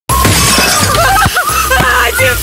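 A glass window pane shattering as a football smashes through it, with music playing.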